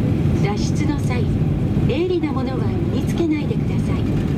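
Boeing 737-800 cabin noise while taxiing: a steady low rumble from the CFM56 engines at taxi power and the rolling airframe. Over it, the recorded safety announcement speaks in short phrases.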